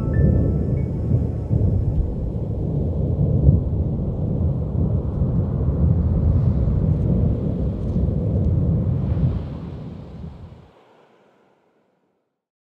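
A deep, loud rumble like thunder in the soundtrack, after the last few notes of the closing music die away. The rumble fades out about ten seconds in.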